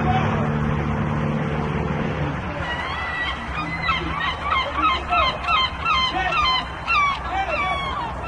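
A small boat's motor runs steadily and stops about two seconds in. Then a gull calls over and over in quick, wavering cries.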